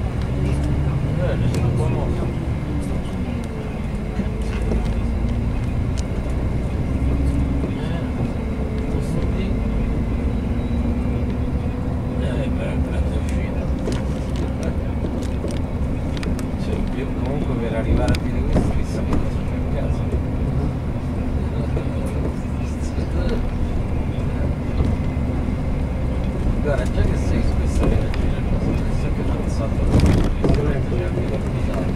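Coach bus heard from inside the passenger cabin while driving: a steady low engine and road rumble with a droning engine note that rises and falls in the first few seconds, then holds steady, with occasional light rattles.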